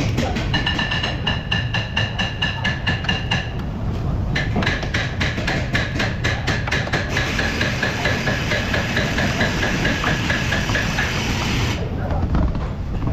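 Pneumatic impact wrench on a long extension hammering, running down the strut's top nut, each rapid blow ringing metallic. It runs in two spells with a short pause about four seconds in, and the second spell speeds into a steady rattle before stopping near the end.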